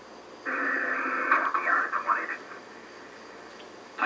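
A short radio voice transmission, thin and band-limited like a radio link, played through a television's speaker. It starts about half a second in, lasts about two seconds, and is followed by a low steady hiss.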